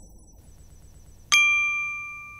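A single bell-like chime sound effect strikes about a second and a half in and rings on, slowly fading. Before it, only the faint high tail of an earlier chime is left.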